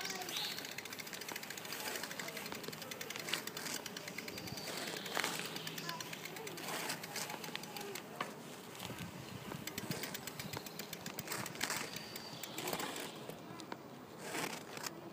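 Indistinct voices of people talking outdoors over steady background noise, with occasional sharp clicks.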